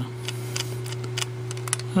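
Light, irregular clicks and ticks of small plastic parts being handled: a robot car kit's circuit board with its plastic wheel and gear turned in the fingers, over a steady low hum.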